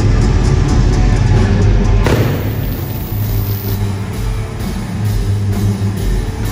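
Live hard-rock band playing loud, with a drum kit and electric guitar, heavy in the bass.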